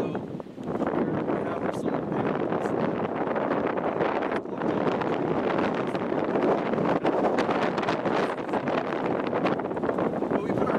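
Strong gusty wind blowing over the microphone, a steady rushing noise that dips briefly about half a second in.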